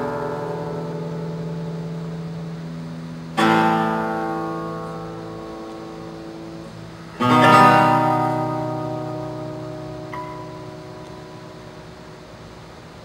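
Classical nylon-string guitar playing slow strummed chords, each left to ring and fade: a new chord about three and a half seconds in and another about seven seconds in, then a soft single note shortly before the end.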